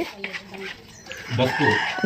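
A rooster crowing, the call starting a little past halfway with a falling pitch.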